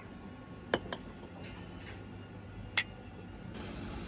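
Porcelain coffee cups clinking: two sharp clinks about two seconds apart.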